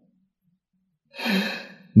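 Near silence, then about a second in a man's audible breath, a short sigh-like intake lasting under a second.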